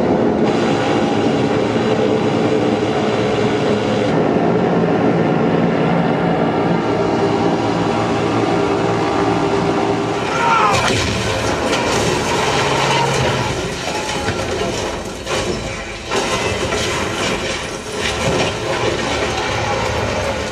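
War-film soundtrack played loud through a large multi-speaker home theatre: a steady, heavy drone of bomber aircraft engines. From about halfway it turns choppier, with many sharp cracks and knocks and a brief whistling glide.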